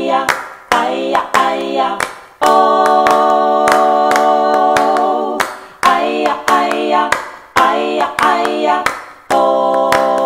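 One woman's voice multi-tracked into three-part a cappella harmony on wordless 'aya' syllables, over hand claps: one part claps a steady beat while another claps a rhythm. The voices break into short phrases with frequent claps, and hold a chord for about three seconds near the start and again near the end.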